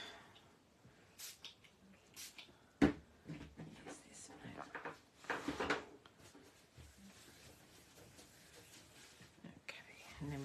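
Quiet handling of craft materials: a wipe is rustled and unfolded, with one sharp knock just under three seconds in, then soft wiping of ink off a craft mat.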